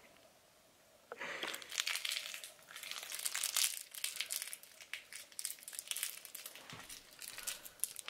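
Plastic crackling as a cat works at it, in dense, irregular crinkles that start about a second in.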